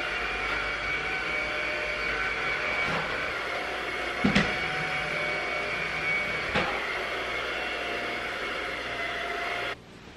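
Cordless stick vacuum running with a steady motor whine, with a couple of sharp knocks partway through. The sound cuts off suddenly near the end.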